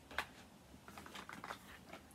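Small clicks and rattles of makeup packaging handled in a bag: one sharp click just after the start, then a quick run of light clicks about a second in.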